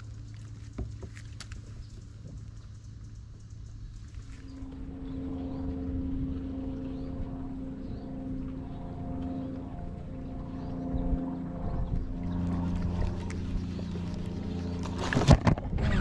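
Boat motor humming steadily at a fixed pitch, coming in about four seconds in and deepening around twelve seconds. A few sharp clicks sound near the end.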